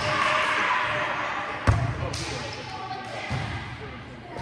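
A volleyball served with a single sharp smack a little under halfway in, echoing through a large gym. Fainter ball thuds and distant voices carry on behind it.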